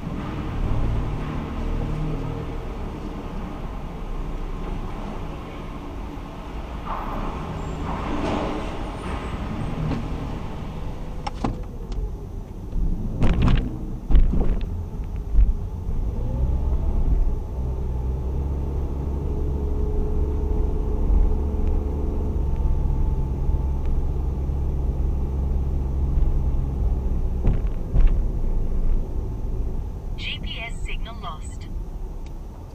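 Car engine running and tyres rolling, heard from inside the car, as it drives through a multi-storey car park and up a concrete ramp. There are several sharp knocks around the middle, and the engine settles into a steady, stronger hum through the second half as it climbs.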